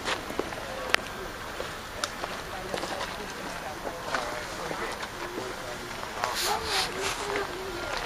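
Background chatter of people talking at a distance, with no clear words, over a steady hiss of outdoor noise. A single sharp click comes about a second in.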